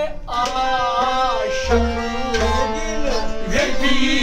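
Male voices singing a folk melody in long held, gliding notes, accompanied by deep hand strikes on a large clay pot drum.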